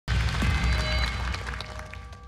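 A TV show's electronic music sting marking the start of the audience vote: a sudden deep hit with high sparkling tones, fading away over about two seconds.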